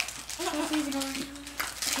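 A voice speaking briefly, with light crinkling of plastic candy wrappers as sweets are taken from a stocking and handled.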